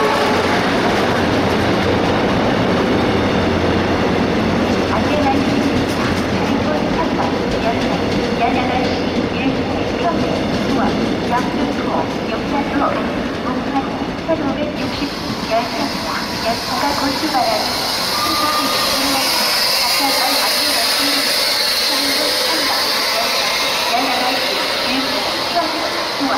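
Korail Mugunghwa-ho passenger coaches rolling along the platform, slowing to a stop. A steady high hiss sets in sharply about halfway through and carries on to the end.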